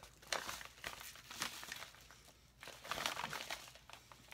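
Crinkly package wrapping being handled and opened, in several short crackling bursts.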